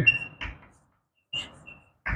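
Chalk writing on a blackboard: a sharp tap about half a second in, then a brief scratchy stroke with a thin, high squeak near the end.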